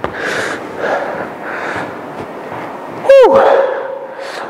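A man breathing hard under exertion, several short puffed breaths in the first couple of seconds of a round of press-ups. About three seconds in comes a loud vocal sound that drops sharply in pitch and then holds a steady note.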